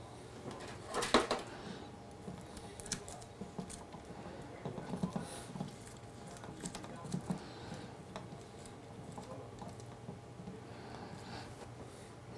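Light clicks and taps of fingers handling small parts on a 3D printer's hot end, with a louder cluster of clicks about a second in and scattered small ticks after.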